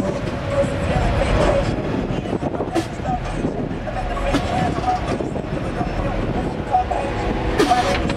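A car's engine running low and steady as the Camaro creeps past at walking pace, with people talking in the background.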